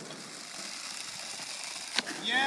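Skateboard wheels rolling over rough asphalt: a steady, even gritty noise, with one sharp click near the end.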